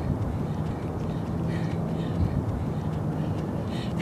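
Steady low rumble of distant road traffic with a faint hum, heard across a wide open valley.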